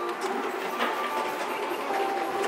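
Canon printer running its paper-feed mechanism as the printed shipping labels come out, a steady mechanical whir with light clicks.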